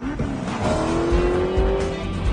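A car engine revving as it pulls through a gear, its pitch rising steadily, with music playing underneath.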